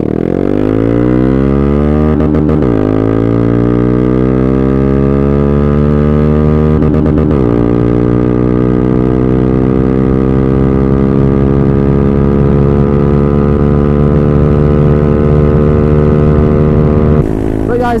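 Honda Grom 125's single-cylinder four-stroke engine, fitted with an aftermarket full exhaust system, pulling hard at wide-open throttle on a 0-60 mph acceleration run. It upshifts quickly right at the start, again about 2.5 s in and again about 7 s in, then climbs slowly in top gear. The throttle shuts off near the end.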